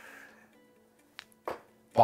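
Faint background music, then a couple of small clicks and, at the very end, one sharp thud as a dart strikes the bristle dartboard.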